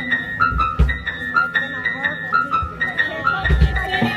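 Live rock band playing an instrumental passage: a fast repeating high riff over drums, with kick-drum beats clustered about half a second in and again near the end.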